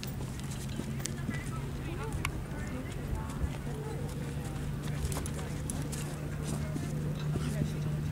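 Horses moving close by on a sand arena: soft hoofbeats with scattered light clicks, over a steady low hum and faint distant voices.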